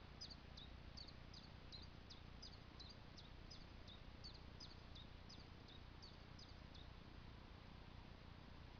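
A small bird calling faintly over near silence: a quick run of short, high downward chirps, about three a second, that stops about six and a half seconds in.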